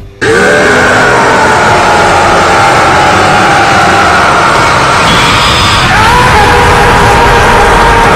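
A man's voice screaming in one long, very loud power-up yell for a transformation. It starts abruptly and is held without a break, with its pitch shifting about six seconds in.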